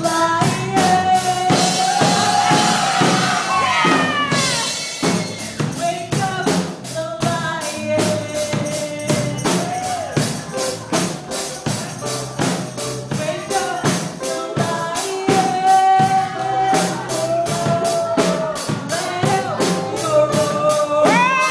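Live worship music: a woman singing into a handheld microphone over a band with a steady, fast percussion beat.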